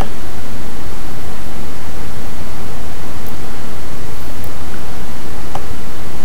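Steady, loud hiss of background noise on the recording, with one faint click about five and a half seconds in.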